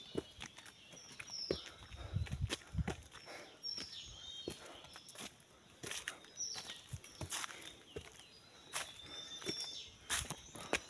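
Footsteps walking along a woodland path, irregular scuffs and steps.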